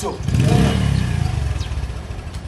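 Motorcycle engine running with a low rumble that swells after the start and dies away near the end.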